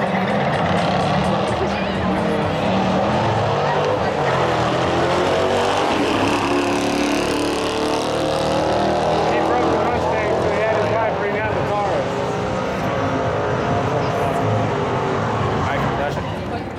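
A Dodge Challenger and a Dodge Charger launching together off the line and accelerating down a drag strip, their engines revving up and dropping back in pitch through several gear changes over a quarter-mile pass.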